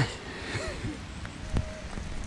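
A short laugh at the start, then steady rain falling in a forest, with a single sharp tap about one and a half seconds in.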